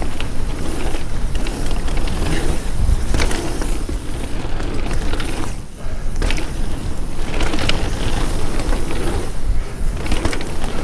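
Devinci Wilson downhill mountain bike descending a dirt trail at speed: a constant rush of tyre roar and wind on the microphone, with sharp rattles and clacks from the bike over bumps. It goes briefly quieter a little before six seconds.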